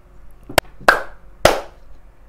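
Three sharp hand claps, the second and third about half a second apart, each ringing briefly in a small room.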